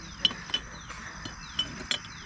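Small ceramic figurines clinking against one another as they are sorted in a plastic basket: about five short, sharp clinks spread over two seconds.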